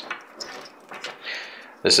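Faint rustling and a few light clicks of black modular power-supply cables and a small plastic connector being picked up by hand. A man's voice starts to speak near the end.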